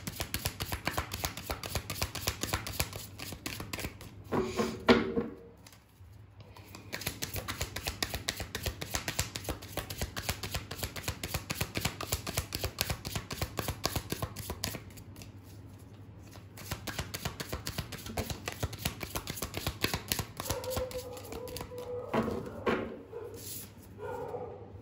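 A tarot deck being shuffled by hand: a rapid, continuous run of light card-on-card slaps and riffles, stopping briefly about five seconds in and thinning out again for a moment around the middle.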